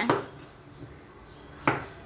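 Faint, even hiss of a steel pot of water at a rolling boil with fish pieces in it, broken near the end by one short, sharp sound.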